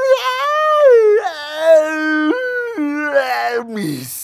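A man's voice letting out one long drawn-out vocal cry, held without a break for nearly four seconds, jumping up and down between pitches and sliding down at the end.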